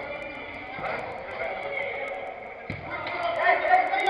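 Indistinct players' voices calling out in a reverberant indoor hall during a five-a-side football game. A ball thuds off a foot about two and a half seconds in, with a lighter knock about a second in.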